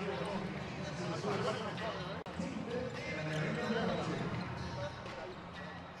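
Basketball court audio: a ball bouncing on the hardwood floor over a steady crowd-like murmur, with one sharp knock about two seconds in.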